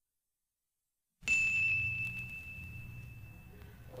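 A single high, bell-like note struck about a second in, ringing and fading away over about two seconds over a low hum, opening the music of a chamber opera.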